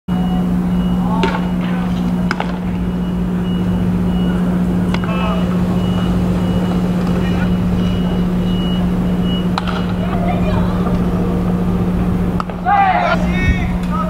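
Ballpark background: a steady low hum with a high beep repeating evenly for the first nine or ten seconds, and players' shouts now and then, louder near the end.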